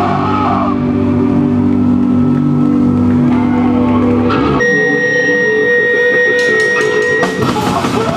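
Live punk band playing an instrumental passage on drum kit and bass guitar with guitar. Sustained low chords give way about halfway to a single high steady tone ringing over sparse playing, and the full band comes back in near the end.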